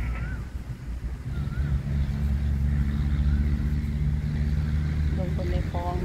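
A motor engine running steadily nearby, a low hum that grows louder from about a second in and eases off near the end.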